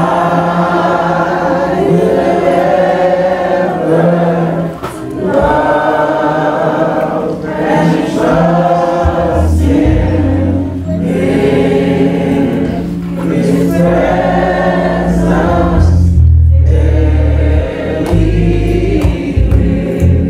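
Church congregation singing a gospel worship song together in long held phrases with short breaks between them, low bass notes joining about halfway through.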